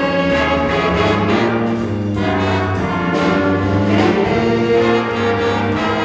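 A student jazz big band playing live: saxophones, trombones and trumpets holding sustained chords over a drum kit keeping a steady beat.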